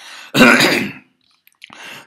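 A man clears his throat with one harsh cough, a single burst lasting well under a second, followed by a faint breath.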